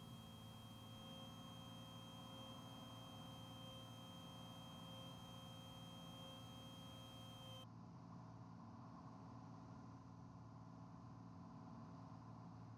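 Faint, steady drone of a light single-engine propeller aircraft's engine, heard through the cockpit intercom feed, almost at silence. A faint high hiss and whine stop abruptly about eight seconds in.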